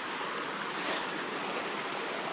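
Steady rushing of a waterfall's water, an even hiss without breaks.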